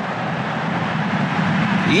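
Steady rushing stadium ambience of a televised football match, picked up by the broadcast's pitch-side microphones.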